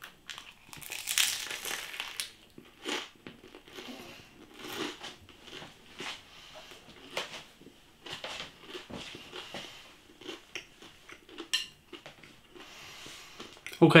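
A person biting into a slice of stone-baked pizza and chewing it, the crust crunching in irregular bursts that are loudest just after the bite.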